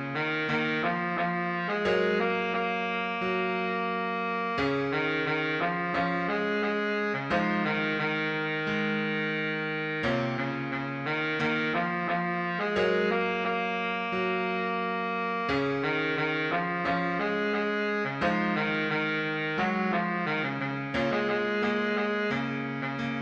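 Baritone saxophone playing a melody of quick runs of short notes broken by held notes, over a backing track.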